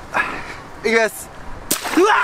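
Giant water balloon pierced with a pin, bursting with a sharp pop near the end, and the water starts to gush down. A short voice call comes about a second in.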